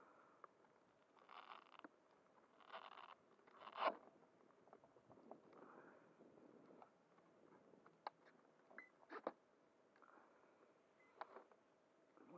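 Faint handling of an RC jet's flight battery and wiring in its battery bay: a few short scraping rasps, the sharpest about four seconds in, then scattered light clicks of plastic connectors and parts.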